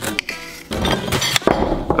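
Background music with several sharp knocks and clinks from a knife cutting the skin off a pineapple on a kitchen counter.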